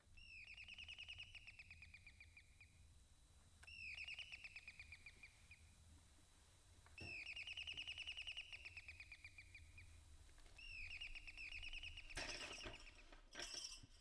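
A small songbird trilling: four phrases about three and a half seconds apart, each opening with a quick upward sweep and running on as a rapid, even trill.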